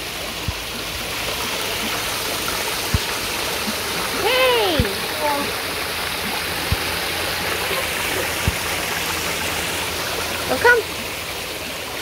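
Small rock waterfall splashing steadily into a garden koi pond. A short vocal exclamation rises and falls about four seconds in.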